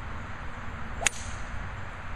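Golf club swishing through the air in a swing, a single short, sharp whoosh about a second in; the ball stays on the turf, so this is a practice swing rather than a strike.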